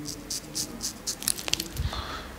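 Straight razor scraping beard stubble through shaving lather in short, quick strokes, about four or five a second, with a sharp click about one and a half seconds in.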